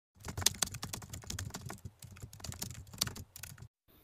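Rapid, irregular clicking of typing on a keyboard, stopping shortly before the end.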